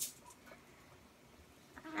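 A single sharp click, then faint quiet room tone with a couple of small ticks; a woman's drawn-out spoken "and" begins at the very end.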